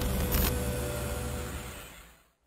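Electronic intro sound effect under an animated logo: a deep, noisy swell with a brief whoosh about half a second in, fading out toward the end.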